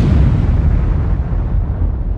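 Loud rumbling tail of an explosion sound effect on the recording: the hiss of the blast fades away while a deep rumble carries on.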